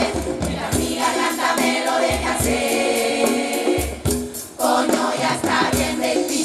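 Women's carnival murga chorus singing together to drum accompaniment, with low drum strokes under the voices. The singing briefly drops out about four seconds in, then resumes.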